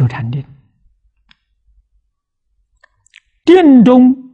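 An elderly man lecturing in Mandarin: a phrase ends, then a pause of about three seconds with a few faint clicks, and he starts speaking again near the end.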